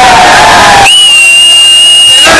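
Crowd noise with shouting voices, then, about a second in, a loud, long, steady high-pitched whistle held for over a second over the crowd.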